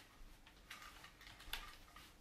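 Near silence, with two faint clicks, one about a third of the way in and a sharper one just past the middle.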